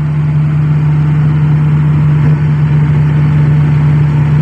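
Komatsu PC400-8 excavator's six-cylinder diesel engine running steadily at about 1,650 rpm, heard from inside the cab. The travel circuit is being loaded: front pump pressure is building, but the track has not yet begun to turn.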